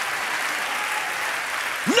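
A large congregation applauding steadily.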